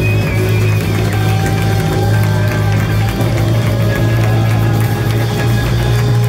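Live disco-funk band playing, with keyboards, electric guitar and drum kit over a held low note.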